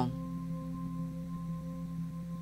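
Binaural-beat background track: a soft, steady drone of several sustained pure tones, low and middle in pitch, holding unchanged.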